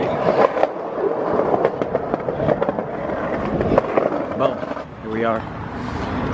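Indistinct chatter of several people on a city sidewalk, with scattered sharp clicks and knocks and street noise behind.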